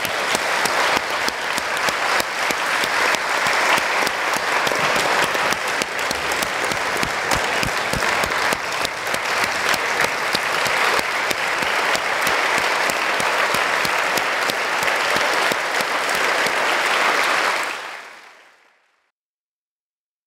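Audience applauding steadily, a dense unbroken clapping that fades out near the end.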